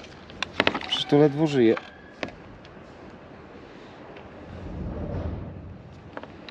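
A few sharp plastic clicks as the broken trunk-lid handle trim is handled, then a low rumble that swells and fades near the end.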